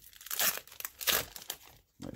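Foil wrapper of a 2019-20 Panini Chronicles basketball card pack crinkling and tearing as it is ripped open by hand, in a few short crackles.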